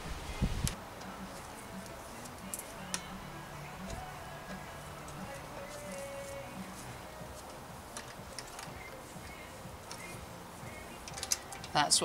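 Light metallic clicks and taps of a hex key and spanner on the mounting bolt of a SRAM NX Eagle rear derailleur as it is fitted to the bike's derailleur hanger, most of them in the first few seconds, over faint background music.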